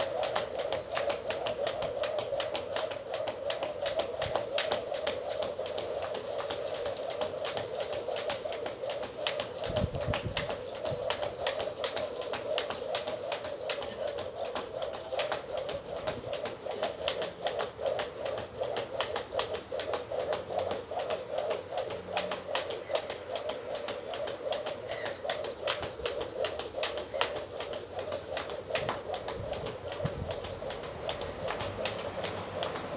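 A skipping rope slapping the ground in a steady, even rhythm, about two to three strikes a second, over a continuous hum.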